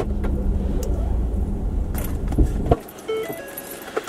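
Car cabin sound: a steady low engine and road rumble that stops abruptly a little under three seconds in, followed by a short run of electronic chime tones.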